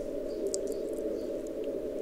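Audio from an Elecraft K3 receiver through a narrow CW filter: steady band noise hiss on 40 meters, picked up by the Pixel MFJ-1886 active loop antenna. A weak Morse code signal is barely showing above the noise, a sign of this antenna's poorer signal-to-noise on the fading signal.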